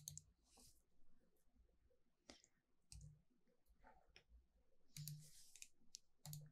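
Near silence broken by a few faint computer mouse clicks, spread about a second apart. A soft hiss comes near the end.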